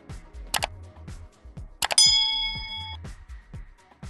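Background music with a steady beat; about two seconds in, a bright bell-like ding rings out for about a second, a notification-bell sound effect from a subscribe-button animation.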